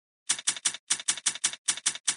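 Typewriter keystroke sound effect: a quick series of sharp key clicks, about five a second in short runs of three or four, synced to text being typed out on screen.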